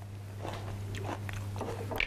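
A person chewing a mouthful of crunchy fresh salad, with a series of faint, irregular crunches. A steady low hum runs underneath.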